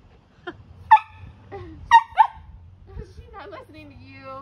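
A puppy's short, high-pitched play barks: sharp yips about a second apart, loudest about one and two seconds in, then softer, lower whining yelps near the end.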